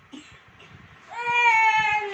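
Young child crying in one long, drawn-out wail that starts about a second in, its pitch sliding slowly down.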